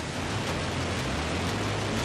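Falcon 9 rocket's nine Merlin engines at liftoff, heard through the launch broadcast: a steady, even rushing noise with a low rumble beneath.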